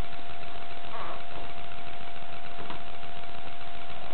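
Steady hiss with a faint, even high hum: the background noise of a low-quality recording, with no voice or music.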